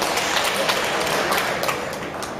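Spectators applauding a won point: many overlapping hand claps that thin out near the end.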